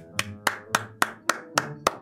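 One person clapping in a steady, even rhythm, about four claps a second, with faint steady background tones underneath.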